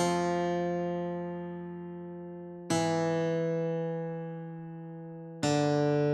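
Acoustic guitar, as played back from the tab, sounding single slow notes at half speed: an F held for about two and a half seconds and fading, then an E held as long, then a D near the end.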